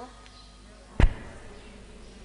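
A single sharp knock with a heavy low thud about a second in, against quiet room tone.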